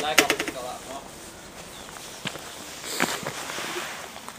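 People's voices in the first second, with a quick run of sharp clicks just after the start and a couple of single knocks later on.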